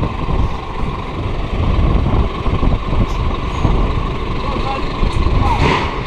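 Scania truck's diesel engine running as the truck pulls slowly out of its parking bay, with a short air hiss near the end.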